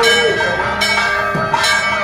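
Temple bell struck about three times, under a second apart, each strike ringing on, as the lamp is waved in the arati (deeparadhana) offering.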